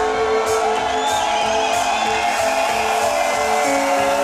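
Live symphonic power metal band playing a song, with held chords and melody lines over a regular beat of drum and cymbal hits.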